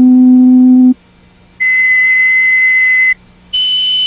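Audiometer hearing-test tones: a series of steady pure beeps, each about a second and a half long with short gaps between, stepping up in pitch from a low hum to a high whistle-like tone and each a little quieter than the one before.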